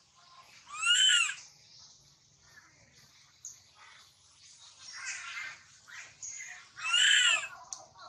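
Baby macaque crying: two loud calls that rise and fall in pitch, about a second in and near the end, with fainter calls between. They are the cries of an infant separated from its mother and troop.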